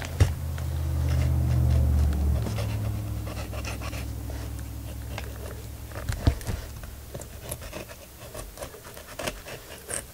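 A knife cutting and scraping through a fish's body on newspaper, making small scratchy clicks and crinkles. A low hum rises in the first two seconds and fades away over the next few.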